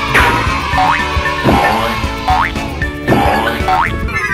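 Cartoon 'boing' spring sound effects, repeated several times, over upbeat children's background music.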